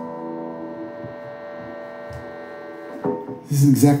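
A held musical chord ringing out steadily and slowly fading, until a man starts talking about three seconds in.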